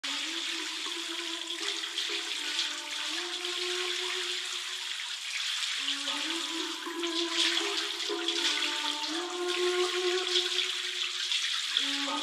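Filtered intro of a hip-hop instrumental: a melody of held notes that changes every second or two, with the bass cut away and no drums, under a steady hiss.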